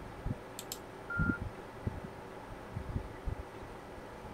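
Two quick computer-mouse clicks just over half a second in, followed by a short single electronic beep, with faint low knocks scattered through the rest.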